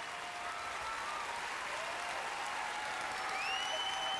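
Theatre audience applauding steadily, with a long, high whistle rising out of it near the end.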